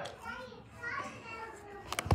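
A girl's high-pitched voice making short wordless vocal sounds, twice, followed by a sharp knock near the end.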